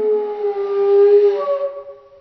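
End-blown wooden flute playing a long held note, which changes to a higher note about a second and a half in and then dies away at the end.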